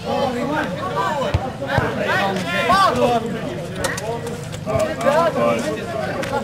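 Several voices of players and onlookers talking and calling out over each other, with a couple of sharp knocks about one and a half seconds in.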